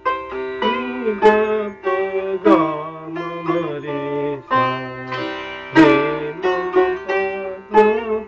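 Sitar playing the opening of the second part of a gat in Raag Shyam Kalyan, teen taal: a run of plucked strokes with several sliding pitch bends (meend), over a steady ringing drone from the other strings. The strongest strokes fall about a second in, about two and a half seconds in, and near six seconds.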